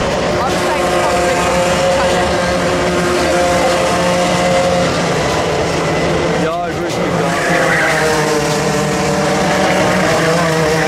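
Racing kart engines running on track, one kart passing close about six and a half seconds in with a falling pitch.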